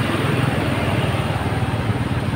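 Steady low rumble of a moving motor vehicle, with road and wind noise.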